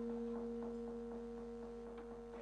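Bronze gamelan instruments ringing on after being struck, two steady pitches held together and slowly fading.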